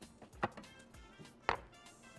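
Background music with a steady beat, and two sharp clicks about a second apart from handling the plastic lid and jar of a countertop blender.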